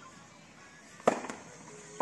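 Tennis racket striking a ball: one sharp, loud pop about a second in, followed shortly by a lighter knock.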